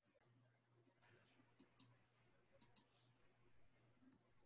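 Two pairs of faint computer mouse clicks, about a second apart, over near silence.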